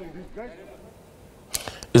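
Faint voices of people talking in the background, fading to a low murmur. About one and a half seconds in there is a sudden short burst of noise, and a man starts speaking near the end.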